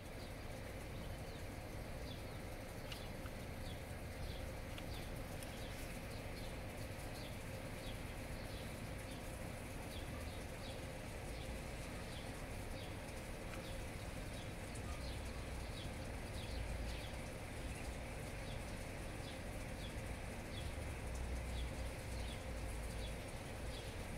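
Outdoor background ambience: a steady low rumble that swells a few times, with faint high chirps repeating about once or twice a second through roughly the first half.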